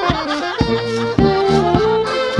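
Folk wedding band playing an instrumental passage: tuba bass and accordion over a bass drum struck four times in a steady beat, about every 0.6 s.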